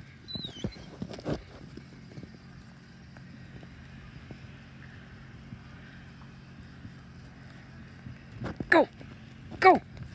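Footsteps crunching in snow, a few sharp crunches in the first second and a half, followed by a faint, steady low hum.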